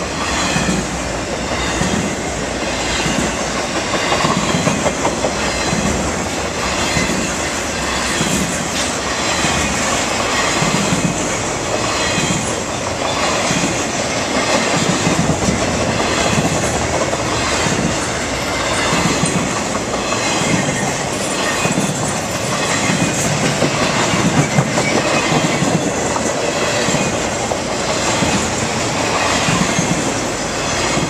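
Slow intermodal freight train of trailers on flatcars rolling past, its steel wheels clicking over the rail joints in a regular repeating rhythm over a steady rumble.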